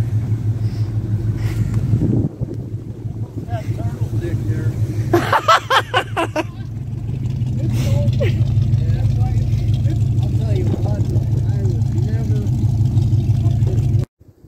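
A vehicle engine idling steadily, growing a little louder about halfway through, with voices and laughter about five seconds in.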